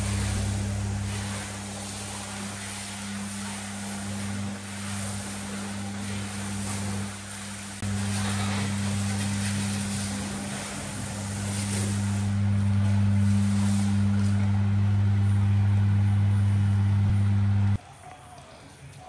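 Pressure washer running with a steady low hum, the hiss of its spray on the van over it. The sound cuts off abruptly near the end.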